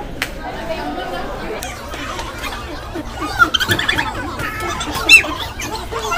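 Human voices: a murmur of talk with high-pitched cries that bend up and down in pitch, the loudest a sharp cry about five seconds in.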